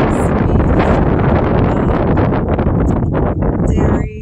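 Wind buffeting the microphone: a loud, steady rumble with no pitch to it.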